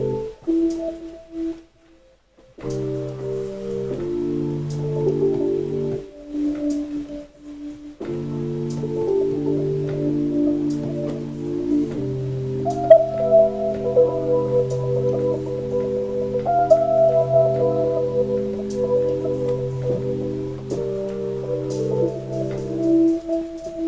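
Electronic music played live on synths from a pad grid controller and keyboard: sustained organ-like chords that change every second or two, with faint high ticks over them. The chords drop out briefly about two seconds in and thin out again around six to eight seconds before settling into a steady held progression.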